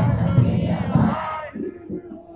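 A marching crowd shouting a chant together, many voices at once, loud for the first second and a half and then dropping away.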